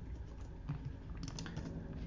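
Faint, scattered keystrokes on a computer keyboard as code is typed into a text editor.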